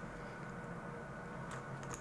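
Quiet room tone with a low steady hum, and two faint clicks about one and a half seconds in, from hands handling the cord and needle.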